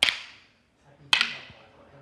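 Two sharp cracks about a second apart from an escrima stick striking during a stick-disarm drill, each leaving a short echo in the room.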